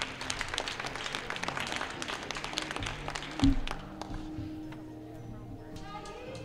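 Audience applause over background music, the clapping thinning out after about four seconds, with one low thump about three and a half seconds in.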